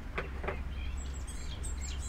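Scissors snipping card, two short snips near the start, while birds chirp with short high notes over a low steady hum.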